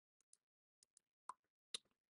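Near silence broken by about six faint, short clicks, the last two a little louder.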